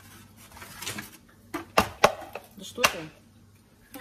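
Eggshells being cracked on a plastic mixing bowl: a few sharp cracks and taps in the second half.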